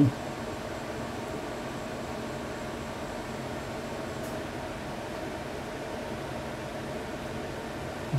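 Steady background hum and hiss with a faint constant tone and no distinct events.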